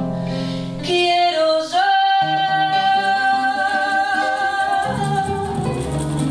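Live small band with a woman singing a long held note over acoustic guitars and bass guitar, closing out the song.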